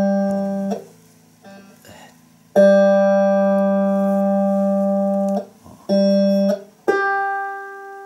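Electric guitar's G string plucked and left to ring clean: a long low G is cut off about halfway through, a short one follows, and near the end a note an octave higher rings and dies away. The higher note is sharp, going high, a sign that the string's intonation is off and its saddle needs moving back.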